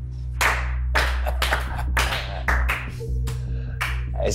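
Slow handclaps, about two a second, over background music with a steady low bass.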